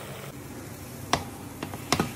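A slotted spatula knocking and scraping against a non-stick frying pan as it pushes thick tomato sauce aside, giving three sharp clicks, the loudest a little after a second in.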